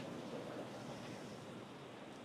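Faint, steady hiss of background noise on the broadcast feed, slowly fading, with no distinct sound events.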